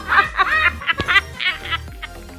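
Girls laughing in quick repeated bursts over background music, the laughter thinning out near the end. A short click about a second in.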